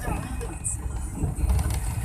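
Engine and road rumble inside a moving passenger van, a steady low noise, with faint passenger voices in the cabin.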